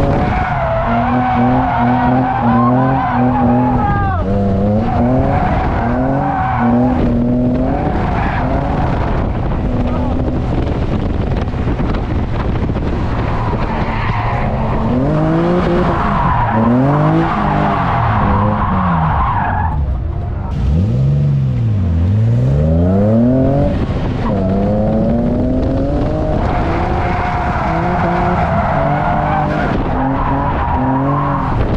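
A Nissan 240SX's swapped-in VQ V6 engine, heard from inside the cabin, revving up and down under hard throttle while drifting. The engine note rises and falls repeatedly, dropping sharply and climbing back several times about two-thirds of the way in. Tyre noise from the sliding tyres runs under it.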